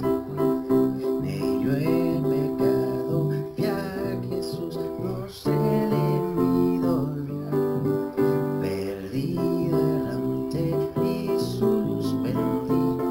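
Electronic keyboard playing a hymn's chorus as held chords over a low bass line. The harmony changes every second or two.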